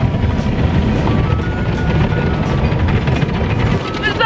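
Automatic car wash heard from inside the car's cabin: rotating brushes and water spray beating against the car's body and glass in a steady, loud low rumble with a hiss of water.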